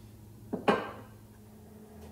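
Two quick clacks, a tenth of a second apart, of a small hard object being set down on the wooden frame and workbench, the second louder and ringing briefly.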